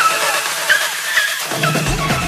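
Electronic dance music: a repeating high synth figure, with heavy bass coming in about one and a half seconds in.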